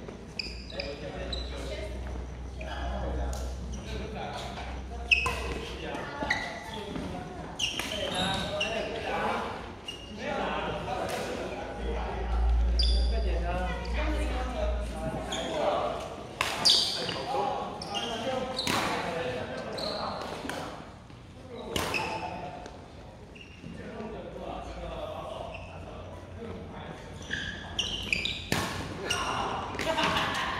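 Badminton rally: rackets striking the shuttlecock in sharp, irregular hits, with sneakers squeaking on the wooden gym floor, all ringing in the echo of a large hall.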